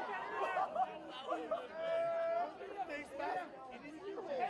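Overlapping voices of several people on the sideline chattering and calling out at once, none of them clear, with one drawn-out call about halfway through.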